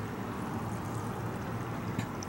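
Water from a garden hose running steadily into a garden bed.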